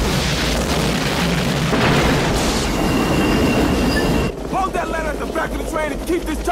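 Film sound effects of a train blowing up: a continuous loud roar of explosion and fire, with a steady high metallic screech in the middle. The roar cuts off abruptly about four seconds in, and voice-like sounds follow.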